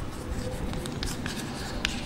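Chalk writing on a blackboard: a run of short, irregular chalk strokes and taps.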